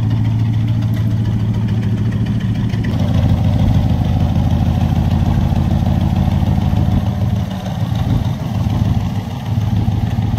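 The 1967 Corvette's swapped-in LS7 7.0-litre V8 idling steadily with a low, even exhaust note that drops a little for a couple of seconds near the end.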